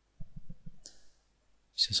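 About five soft, low clicks in quick succession from a computer mouse as a slider is dragged, followed by a brief hiss.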